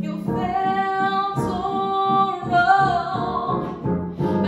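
Female voices singing a slow pop ballad in harmony over piano accompaniment, with long held notes.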